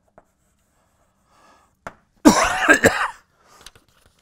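A man clears his throat with two quick coughs, about halfway through, after a quiet stretch with a faint tap or two.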